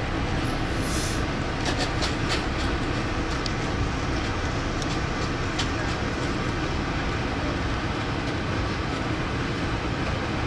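Amtrak passenger train running along the track, heard from inside the coach: a steady rumble with a few sharp clicks, mostly in the first few seconds.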